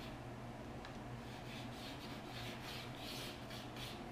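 Pencil scratching on glazed porcelain tile as reference marks are drawn along a shower rail: a run of short, faint scratching strokes that come closer together in the second half.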